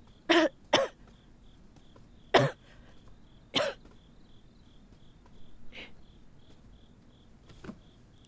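A person coughing hard, four coughs in the first four seconds with the first two close together, then weaker coughs later. Crickets chirp steadily underneath, about three chirps a second.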